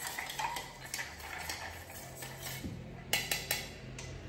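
Bar spoon stirring ice in a stainless steel mixing tin for a martini: a continuous light rattle and clink of ice against the metal, with a few sharper clinks about three seconds in.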